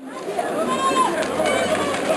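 Several people shouting and calling out over a bed of background chatter, with no clear close-up talk; the sound fades in quickly at the start.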